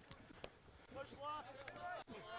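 Faint, distant voices of players shouting on a rugby pitch during a ruck, with a single click about half a second in.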